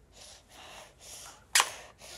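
A few soft rustling noises, then one sharp click about three quarters of the way through.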